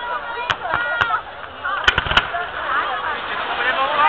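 Fireworks bursting, with sharp bangs about half a second and one second in and three quick ones close together about two seconds in, over the chatter of a crowd of spectators.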